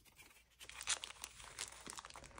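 Paper dollar bills rustling and crinkling as they are handled and slipped into a clear plastic binder pocket, a few soft, scattered crackles, the clearest about a second in.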